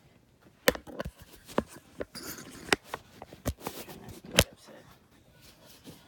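Handling noise from a phone held in the hand: scattered sharp clicks and knocks as fingers shift and grip on the bare phone body, the loudest about four and a half seconds in.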